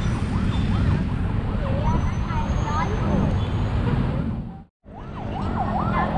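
A siren wailing in quick up-and-down sweeps over heavy wind and traffic rumble. The sound cuts out to silence for a moment just before the five-second mark, then fades back in.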